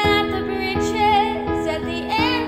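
A female voice sings a sustained, wavering wordless line over piano chords struck about every three-quarters of a second.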